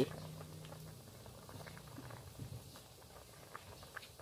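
Water boiling hard around corn cobs in an uncovered wok: faint, irregular bubbling and popping.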